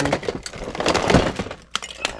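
Plastic toy packaging and blister-packed action figures clattering and crackling against each other and the sides of a plastic storage tote as they are rummaged through, in a dense run of clicks, loudest a little after one second and dying away about a second and a half in.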